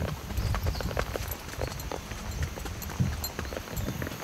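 Hooves of a mule or horse clopping along a dirt mountain trail in an irregular patter of knocks, over a low rumble from a microphone carried along in motion.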